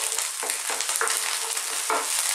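Eggs and rice frying on very high heat in a non-stick frying pan: a steady sizzle, with a few short strokes of a plastic spatula stirring the scrambling eggs.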